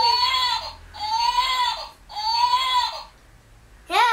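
Push-button electronic toy playing the same short recorded cry-like sound three times in a row, each about a second long with a pitch that rises a little and falls.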